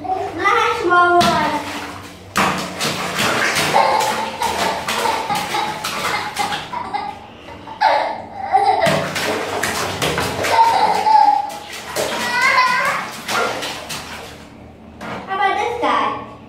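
Hands splashing and sloshing in a plastic basin of soapy water, in bursts through the middle, with a child's voice talking in short stretches between.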